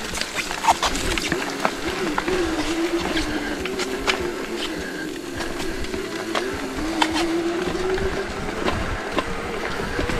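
ENGWE X20 e-bike's electric motor whining steadily under load on an uphill climb, its pitch wavering a little. Scattered sharp clicks and knocks come from the bike as it rides over the dirt trail.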